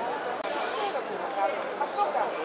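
A short, sharp burst of spray hiss lasting about half a second, over the steady chatter of a crowd in an exhibition hall.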